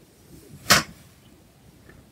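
One sharp swish about two-thirds of a second in, from a wand cat toy's fabric streamers being swung and landing on the wood floor, with a softer rustle just before it.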